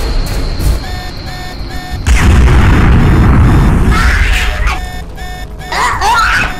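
Explosion sound effect for a spaceship crash: a sudden loud boom about two seconds in that rumbles on for a couple of seconds. Behind it, music runs with a short tone repeating evenly.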